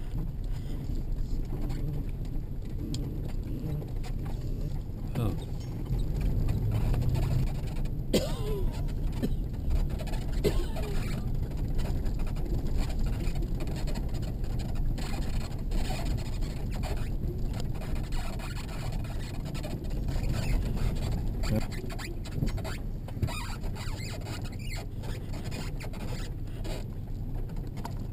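Vehicle driving slowly on a gravel and dirt road, heard inside the cabin: a steady low rumble of engine and tyres with scattered clicks and rattles, and a few short squeaks about eight to ten seconds in.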